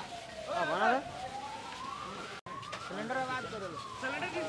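An emergency-vehicle siren wailing slowly, its pitch falling and then climbing over about two seconds. It cuts off abruptly just past halfway and resumes falling. A few voices talk over it.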